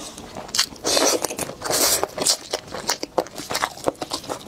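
A cooked crab leg's shell being cracked and pulled apart by hand close to the microphone, giving an irregular run of crisp cracks and crackles, with chewing.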